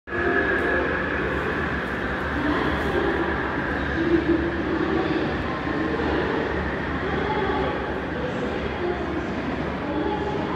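Railway station platform ambience: a steady train rumble with a faint murmur of voices.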